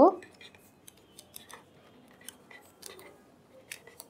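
Pen writing on paper: short, irregular scratchy strokes and ticks as words are written.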